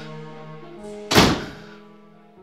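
Dramatic film score of sustained held notes, with one loud, sudden thud about a second in that rings out briefly.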